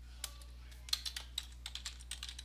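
Typing on a computer keyboard: a run of quick, irregular key clicks, faint, over a low steady hum.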